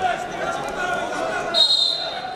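Indistinct voices calling out in a large, echoing arena during a wrestling bout, with a brief high squeak about one and a half seconds in.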